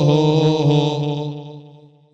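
A man's voice holding one long chanted note in a sermon's melodic delivery, dipping slightly in pitch soon after it begins and fading out near the end.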